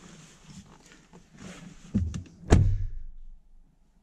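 Driver's door of a 2020 Ford Explorer being pulled shut from inside: a lighter knock, then a heavy, solid thunk half a second later. After it the garage ambience is cut off.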